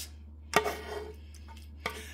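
A spatula scraping thick filling out of a pot: a sharp knock against the cookware about half a second in, with a brief ring, and a lighter knock near the end, over a steady low hum.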